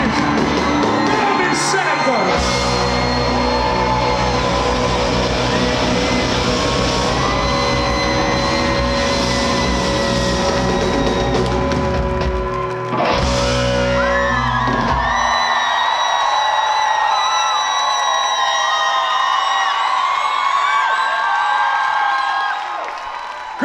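Live rock band playing loudly: electric guitars, bass and drums with a shouted lead vocal. About fifteen seconds in the bass and drums stop, leaving only higher, wavering sustained notes.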